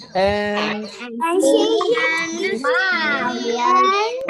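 Several children reading aloud together in chorus, their voices overlapping out of step, heard through a video call.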